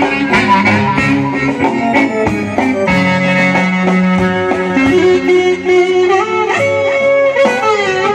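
Greek folk dance music from an amplified live band: plucked strings keep a steady strummed rhythm under a melody line that slides between notes in the second half.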